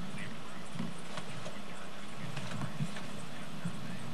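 A steady low hum with light, scattered clicks and taps over it, and faint indistinct voices in the background.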